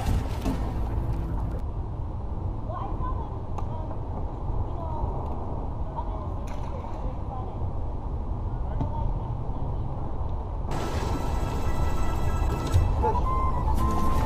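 Steady low rumble of wind on an action-camera microphone, with faint music and muffled voices underneath.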